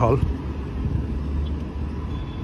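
Steady city road traffic noise, a low even hum with no single vehicle standing out.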